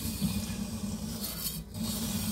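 Kitchen knife blade rubbing back and forth along a wet silicon carbide sharpening stone, a gritty scraping, with tap water running onto the stone.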